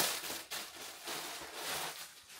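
Thin clear plastic garment bag crinkling and rustling as it is ripped open and a knit jumper is pulled out of it.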